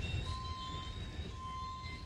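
Quiet warehouse-store room tone: a low steady rumble with a faint, steady high tone that comes and goes.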